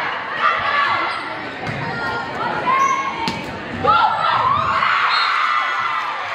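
Volleyball rally in a gymnasium: the ball struck several times, with players and spectators shouting, echoing in the large hall.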